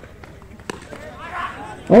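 A single sharp crack of a cricket bat striking the ball about two-thirds of a second in, a shot hit for six, followed by faint distant shouts from spectators.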